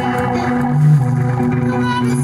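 Live band playing an instrumental passage: electric guitar through effects over bass guitar notes and a steady held low tone.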